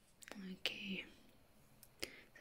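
A woman's voice saying a brief, soft word or two in the first second, then quiet with a faint tick near the end.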